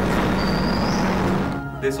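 City street traffic noise, a steady loud rush of passing vehicles with a brief high squeal partway through. This is the outside noise that reached the room before it was soundproofed.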